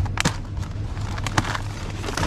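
Plastic meat trays and their film wrapping being handled, giving a few sharp clicks and crackles, the strongest about a second and a half in, over a steady low hum.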